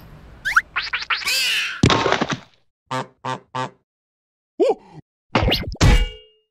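Cartoon sound effects over music: a rising whistle and a whoosh, then a heavy thud about two seconds in. Three quick bouncy blips follow around the third second, and more thumps come near the end.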